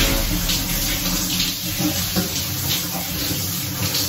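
Water running from a hand-held showerhead, spraying and splashing onto hair and body.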